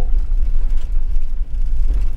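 Steady low rumble of a camper van driving on the road, heard from inside the cabin: engine and road noise.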